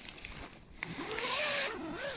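Zip on a tent's inner door being pulled open: a small click a little before halfway, then about a second of zipper rasp that wavers in pitch as the pull speeds and slows.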